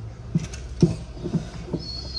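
A few light clicks and knocks of spice containers being moved about in an overhead kitchen cupboard, over a low steady hum.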